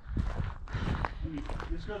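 Footsteps on gravel, a quick run of short crunches, with a voice coming in about a second in.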